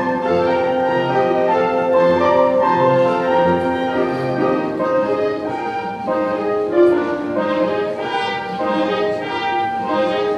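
Live pit orchestra playing an instrumental dance number, with brass and strings.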